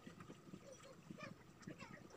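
Faint squeaks and light taps of a marker pen writing on a whiteboard, with short irregular strokes over near-silent room tone.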